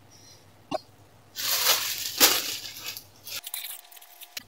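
A plastic courier mailer bag rustling and crinkling as it is handled, about a second and a half in, after a single sharp click.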